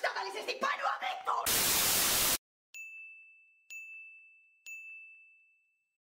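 A loud burst of static hiss lasting about a second cuts off suddenly. Then a bell dings three times, about a second apart, each strike ringing on and fading.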